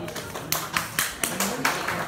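A run of sharp hand claps at an even pace, about four a second, starting about half a second in, over faint acoustic guitar.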